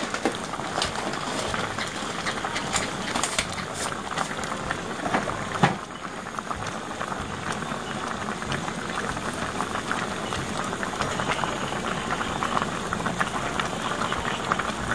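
Spicy pork lung curry boiling in a large stainless steel pot: a steady crackle of popping bubbles, with one louder pop about halfway in.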